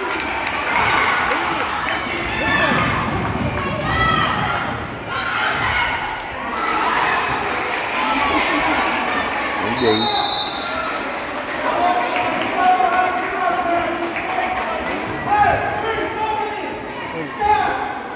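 Basketball being dribbled on a gym floor amid players' and spectators' voices echoing in the hall. About ten seconds in a referee's whistle blows once, briefly, as a foul is called.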